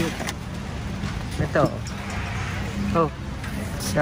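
Busy store background: a steady low hum and general noise, with a click near the start and two short bits of voice about a second and a half and three seconds in.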